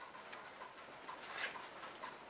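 Faint room tone with a few light ticks.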